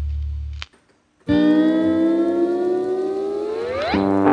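Background music on electric guitar: a held low note cuts off, and after a brief silence a long sustained note rises slowly, then slides sharply up in pitch near the end.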